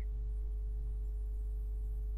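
A steady low electrical hum with a faint, steady higher tone over it, the background noise of the recording; no other sound stands out.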